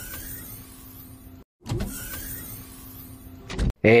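Whirring, motor-like mechanical sound effect marking a video transition, heard twice, each time starting with a low thump and tailing off.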